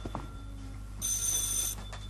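Desk telephone bell ringing: one short ring about a second in.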